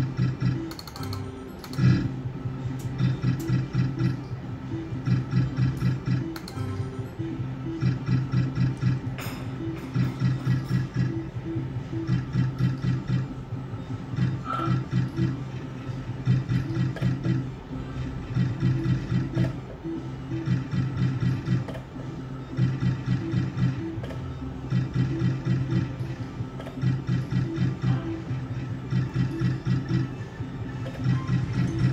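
Electronic reel-spin sounds of a Novoline Book of Ra Magic slot machine. Short low notes repeat quickly in runs, with a brief break as each spin ends and the next begins.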